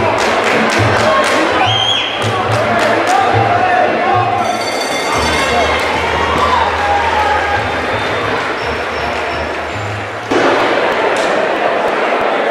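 Fight-hall crowd shouting over music, with sharp thuds in the first few seconds. A bell rings about four and a half seconds in, marking the end of the bout. About ten seconds in, louder cheering and applause break out.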